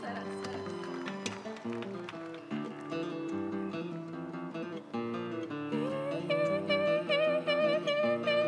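Acoustic guitar playing a plucked and strummed accompaniment between sung verses of a folk song. A woman's voice comes in about six seconds in with a long, wavering held note.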